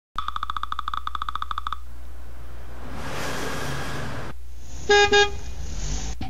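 Car sound effects: a rapidly pulsing electronic tone for about a second and a half, then a swelling rush like a car driving past that cuts off suddenly, then a car horn honking twice, over a steady low hum.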